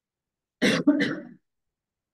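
A person clearing their throat: two quick, rough bursts a little over half a second in, over within a second.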